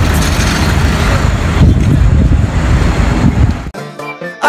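Wind buffeting the microphone, a loud low rumble with hiss. It cuts off abruptly just before the end.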